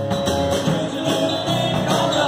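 Live band playing a rock and roll number: acoustic guitars strummed over a drum kit keeping a steady beat.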